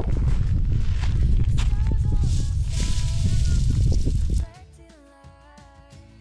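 Wind buffeting the microphone in a heavy low rumble, with quiet background music coming in underneath. About four and a half seconds in the wind noise cuts off suddenly, leaving only the soft music.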